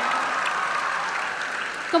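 Audience applauding, a steady even clapping that eases slightly toward the end.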